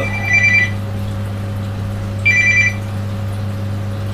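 A telephone ringing electronically in short trills of two high tones, once at the start and again about two seconds later, over a steady low electrical hum.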